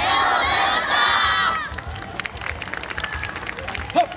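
A large yosakoi dance team shouting together in unison for about a second and a half, a closing call of thanks to the audience, followed by scattered applause.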